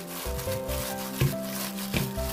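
Background music with held notes over the rubbing and squishing of a plastic-gloved hand working thinly sliced pork belly and gochujang marinade together in a glass bowl. Two sharper clicks come about a second in and near the end.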